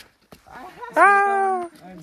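A person's voice calling out once, a drawn-out shout held for most of a second and falling slightly in pitch, about a second in.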